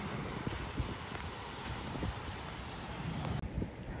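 Wind blowing over the microphone, a steady rushing noise with low buffeting. About three and a half seconds in it cuts to a duller, quieter wind.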